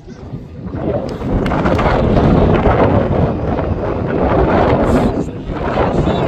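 Wind buffeting the microphone: a loud, rough rumble that swells about a second in and stays strong to the end.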